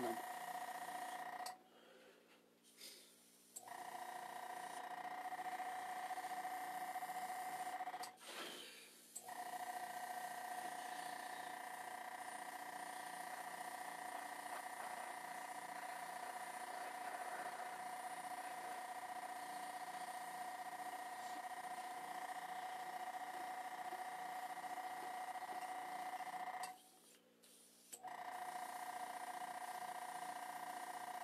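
Small airbrush compressor motor running with a steady hum, cutting out briefly three times (about a second and a half in, about eight seconds in, and near the end) and starting again each time.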